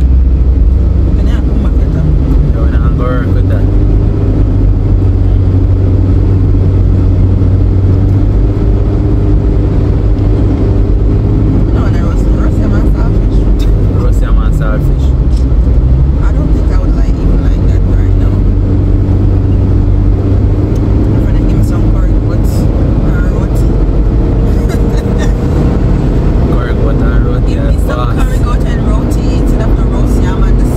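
Steady road and engine noise inside a car cruising on a highway, with a voice coming through faintly at times.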